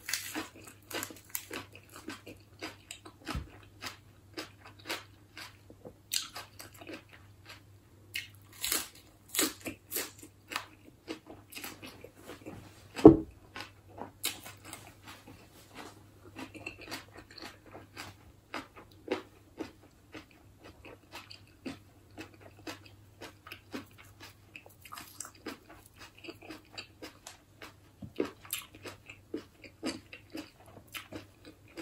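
A person chewing and crunching a mouthful of fresh lettuce wrapped around snail salad: a steady run of small crisp crunches and wet mouth clicks. There is one sharp thump about 13 seconds in.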